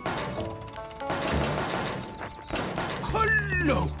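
Cartoon background music with knocking on a wooden garage door, and a voice near the end.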